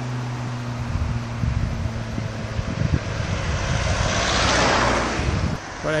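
Cars passing on a road: a steady engine hum fades out in the first second or so, then the tyre and engine noise of an approaching car swells to a peak about four to five seconds in and drops away sharply just before the end.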